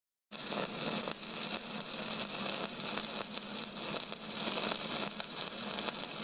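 Steady hiss with faint, irregular crackling and a low hum underneath, starting abruptly just after the beginning.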